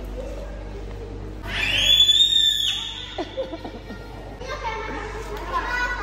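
A child's high-pitched squeal that rises and then holds for about a second, the loudest sound, followed by young children's voices and chatter in a large hall.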